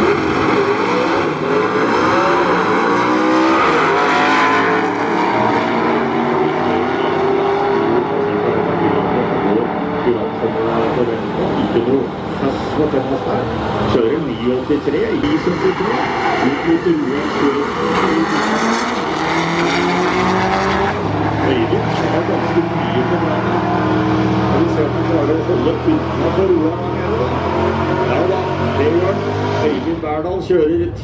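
Drag-racing cars' engines revving and running hard, loud throughout, their pitch rising and falling as they rev at the start line and accelerate down the strip.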